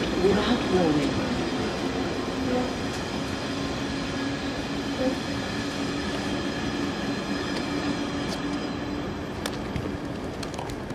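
The tail of a freight train, a rake of MLA box wagons, runs through the station, with wheels running on the rails. The sound fades slowly as the last wagons go by, with a steady tone held underneath.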